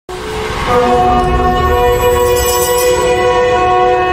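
A loud, sustained horn-like chord of several held tones that swells in from silence over about the first second and then holds steady, opening the programme's intro music.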